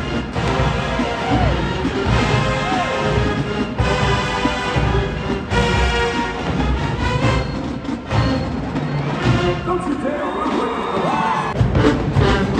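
Marching band playing on the field, brass and drums together at full volume.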